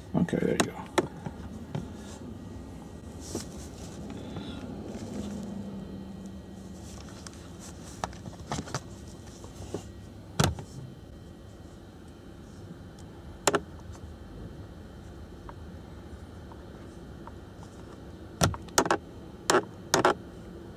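Scattered sharp clicks and taps from a plastic vent-clip magnetic phone mount being handled and a phone being set onto it, with a cluster of clicks near the end, over a low steady background noise.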